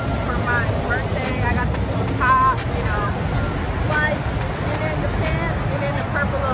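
Voices talking over a steady low rumble of outdoor background noise.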